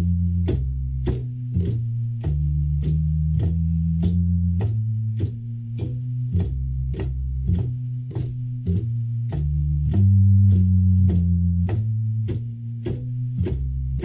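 Hammond organ walking bass line in F blues, played on the lower manual at about two swung notes a second, each note starting with a sharp click. A single bass pedal is struck along with the line to add grit to the bottom end without a distinct pedal note.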